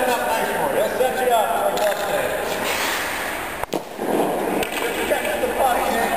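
Indistinct voices of people talking in a large, empty ice arena, with a short stretch of noisier sound around the middle and a sudden brief dropout a little past halfway.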